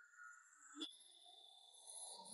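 Near silence on a vocals-only track isolated from a live rock concert: just faint thin leftover tones, and a brief click a little under a second in.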